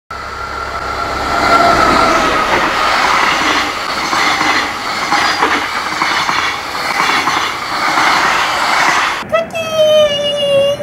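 A locomotive-hauled passenger train passes close by: rumble and clatter of the wheels on the rails, with a high whine in the first few seconds. The train sound cuts off abruptly about nine seconds in, and a child's sung voice begins.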